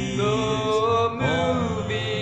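A recorded doo-wop style vocal harmony song: a lead voice sings long, gliding notes over sustained backing harmony.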